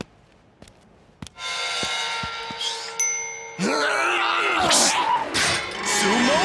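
Cartoon soundtrack music and sound effects. A few faint clicks come first, then a held chord with a short ding about three seconds in. Then louder, busy music with sliding tones and whooshes.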